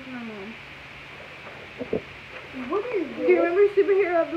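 A girl's wordless vocal sounds, sliding up and down in pitch, near the start and again over the last second and a half, with a single knock about two seconds in.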